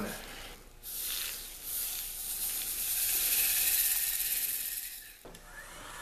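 Candy sprinkles poured from a glass jar onto wet epoxy in a mold, a continuous high rattling hiss that starts about a second in, swells, and fades out about five seconds in.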